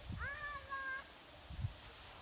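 A puppy gives one short whine, rising at first and then holding its pitch for under a second. Low bumps of wind or handling noise sit underneath.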